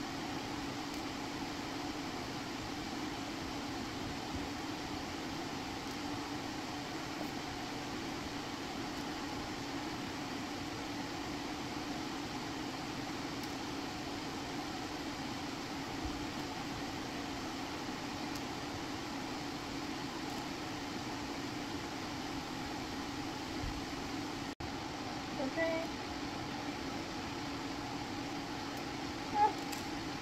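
Steady mechanical hum, an even low drone at constant level, which cuts out for an instant about three-quarters of the way through.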